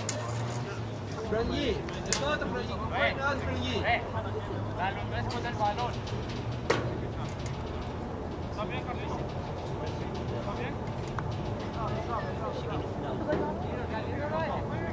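Indistinct voices of players and onlookers calling out across the field, over a steady low hum. A sharp knock comes about two seconds in and another near the middle.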